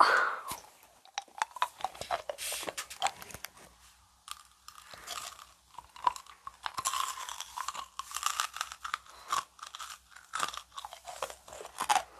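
Blue candy being chewed and crunched in the mouth close to the microphone, a run of many irregular sharp crunches.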